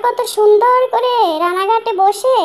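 A woman's high-pitched voice in drawn-out, sing-song phrases, the pitch sliding up and down.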